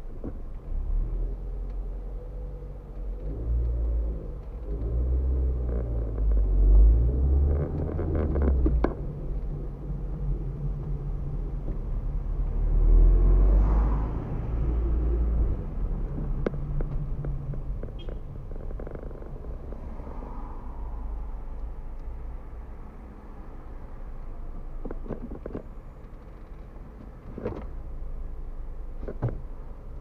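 Car engine and road rumble heard from inside the cabin while driving in city traffic, swelling louder twice in the first half and settling quieter in the second half as the car slows, with a few faint clicks.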